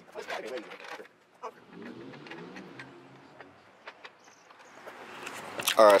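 A few sharp clicks and light knocks of handling, with a faint voice in the background, then a man begins speaking at the very end.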